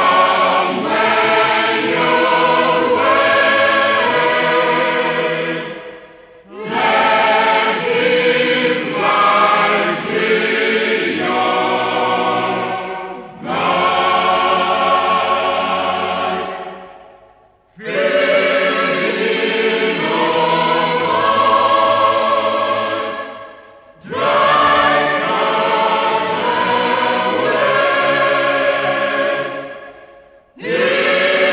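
Mixed choir singing a hymn in long phrases of about five to six seconds, each ending in a brief break before the next.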